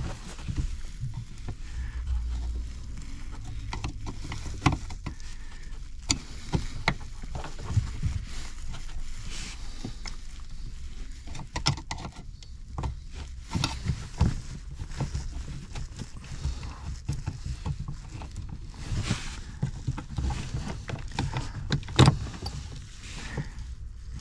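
A five-wire plastic harness connector being worked loose by hand from a first-generation Ford Explorer's 4x4 module and unplugged: irregular clicks, taps and scrapes of plastic, over a low steady rumble.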